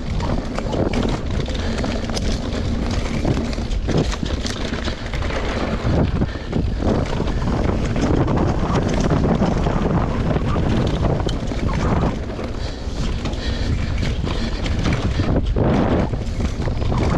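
Wind rushing over the microphone, mixed with a mountain bike rattling down a rough dirt trail: tyres rolling over dirt and roots, with frequent knocks and clicks from the bike.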